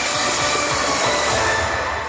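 Loud, dense, sustained passage of the projection show's soundtrack from the park speakers, full of held tones, easing off slightly near the end.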